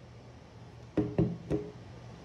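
Small plastic-bodied cordless chainsaw set down on a wooden tabletop: three quick knocks starting about a second in, each with a short ringing tone.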